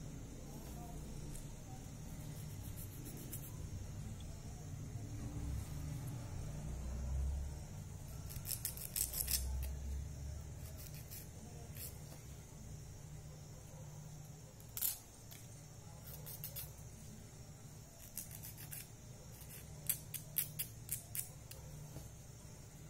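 Nail file rasping against a fingernail in short runs of quick strokes with pauses between, over a steady low hum.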